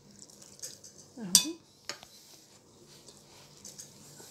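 A single sharp clink against a glass mixing bowl with a brief ring, about a second and a half in, followed by a lighter knock half a second later; between them only faint handling sounds.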